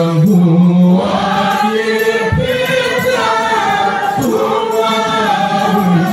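Group of men singing a maulid chant together into microphones, holding long notes and gliding between them.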